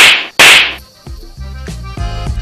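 Two loud whoosh transition sound effects in quick succession, about half a second apart, each fading quickly. About a second in, background music with a bass line starts.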